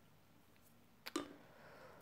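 Quiet room tone broken by one short click about a second in, as a plastic jar of acrylic paint is handled and picked up off a wooden tabletop.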